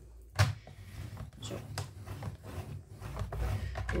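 Paper trimmer's scoring blade carriage pushed along its rail over kraft cardstock, scoring a fold line down the middle: a sharp click about half a second in, then a steady rubbing scrape as the carriage travels.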